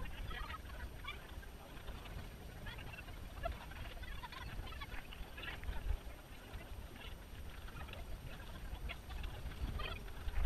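Wind rumbling on an action-camera microphone carried by a runner, with the jostle of running across grass and faint short, scattered higher sounds.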